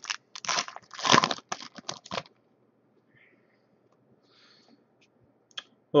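Foil trading-card pack wrapper crinkling and tearing open, a run of quick crackles lasting about two seconds, then faint rustling and a light click near the end.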